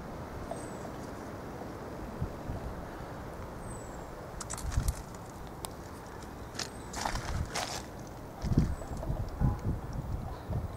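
Footsteps and rustling of a person walking down a garden with a handheld camera, over a steady low background noise. Scrapes come in the middle, and a run of soft low thumps near the end as he reaches the fence.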